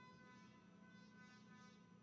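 Near silence, with only a faint steady hum and a few thin high tones.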